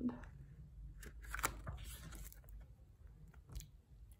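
Faint paper rustling and a few soft clicks from a hardcover picture book being closed and turned to its front cover, over a low steady room hum.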